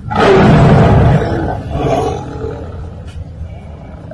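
Tiger roaring: one loud roar lasting about a second, then a weaker second swell about two seconds in that fades away over a low rumble.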